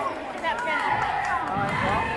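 Crowd voices and calls echoing in a gym during a basketball game, with the squeak of basketball sneakers on the hardwood court as players run. Short squeaks rise and fall around half a second in and again near the end.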